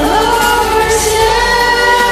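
Women singing over a karaoke backing track; a voice slides up into a long held note near the start.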